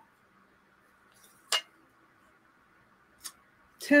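Handling of a glass dish and a wooden ruler: one sharp light tap against the glass about halfway through and a fainter tick near the end, otherwise quiet.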